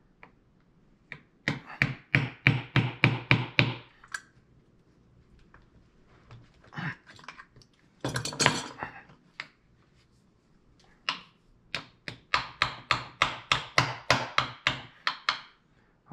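A small ball-peen hammer tapping a metal support rod into a sculpture armature: a run of about ten quick light strikes, then, after a short rough noise midway, a longer run of about fourteen strikes at roughly four a second.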